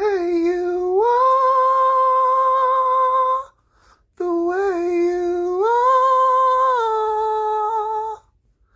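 A man singing unaccompanied in a high register, in two long held vowel notes with a short breath between. Each note steps up in pitch partway through and holds; the second eases down slightly near the end.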